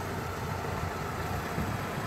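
MINI Cooper S Clubman's turbocharged four-cylinder engine running steadily at low speed as the car rolls slowly across gravel.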